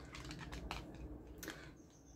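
Faint clicks and light taps of oracle cards and a small card box being handled, as a card is drawn and picked up.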